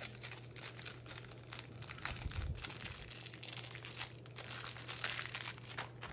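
Clear plastic packets of lace trim crinkling as they are picked up and handled: a continuous, irregular run of small crackles.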